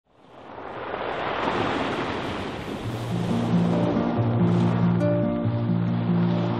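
Waves breaking and washing onto a pebble beach, fading in at the start. Music with slow, sustained low notes comes in about halfway through, over the surf.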